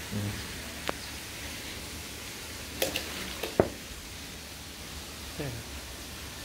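A few sharp clicks or knocks, the loudest about three and a half seconds in, over a steady outdoor background hiss, with brief low voices.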